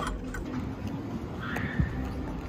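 A few light clinks of cutlery against a ceramic bowl over steady café background noise, with a dull knock near the end.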